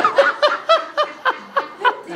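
A man laughing in a run of short 'ha' bursts, about four a second, each falling in pitch.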